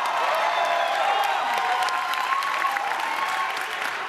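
Crowd applauding and cheering, many hands clapping with voices shouting over it.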